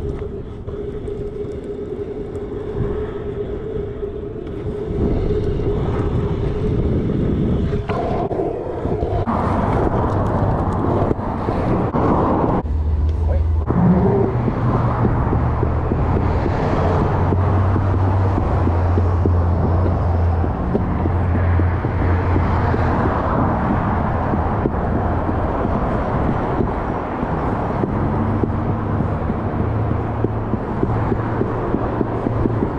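Stunt scooter wheels rolling over pavement. A steady hum on smooth asphalt in the first several seconds gives way to a rougher rolling noise on concrete sidewalk slabs, with road traffic passing alongside and a low rumble.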